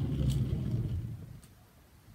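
Ab wheel rolling forward across a hard laminate floor: a low rumble that fades away as the roll-out slows to full extension about a second and a half in.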